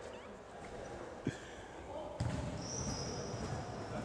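Futsal match sounds on an indoor court: a single ball thump about a second in, then the low noise of play with high shoe squeaks on the court floor.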